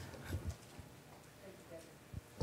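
Quiet meeting-room tone in a pause between speakers, with a few faint soft knocks in the first half second.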